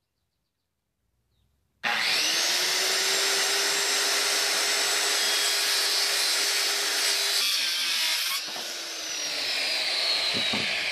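Handheld circular saw spinning up about two seconds in and cutting through a wooden board with a steady high whine. The sound changes as the blade finishes the cut, then the trigger is released and the motor winds down with a falling whine near the end.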